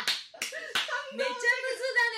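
Three sharp hand slaps about a third of a second apart in the first second, amid laughter, followed by a woman's speech.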